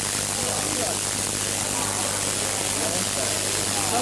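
High-voltage spark discharge from a Tesla-type coil: a continuous, even hiss of branching streamers playing over a disc electrode, with a steady low hum underneath.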